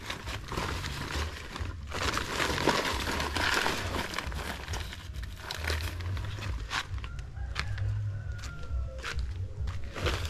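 Dry litter and garbage rustling and crackling as it is gathered up, with scattered short clicks, over a steady low rumble of wind on the microphone.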